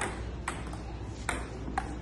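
A table tennis rally: the celluloid ball clicks sharply off the paddles and the Joola table top, four quick hits in under two seconds, some with a short ringing ping.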